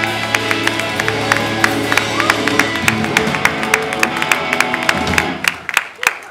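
Live indie rock band with electric guitars, bass and drums playing the last bars of a song, the chords held and ringing, with scattered audience clapping. The band's sound drops away near the end.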